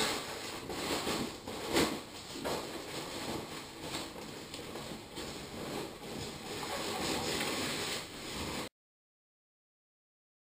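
Rustling and handling of a wheel cover as it is pulled and stretched over a car wheel, with a few light knocks. The sound cuts off abruptly into dead silence near the end.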